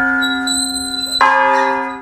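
An 18th-century church bell, believed to be bronze, rung by its rope-pulled clapper: a stroke that rings on with many steady tones, then a second stroke a little over a second in. The ringing is cut off at the end.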